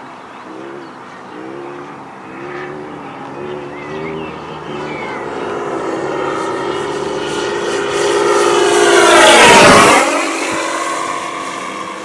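Radio-controlled P-51 Mustang model's engine and propeller in flight. The note wavers as the plane manoeuvres, then grows louder as it closes in, loudest about nine to ten seconds in. As it passes, the pitch drops sharply and the sound fades.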